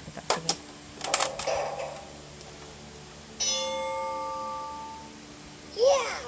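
A plastic ball drops into a battery-powered toy cement mixer truck with a few clicks and a short rattle, then the toy plays an electronic chime that rings for about a second and a half and fades. Near the end the toy starts another electronic sound that swoops up and down in pitch.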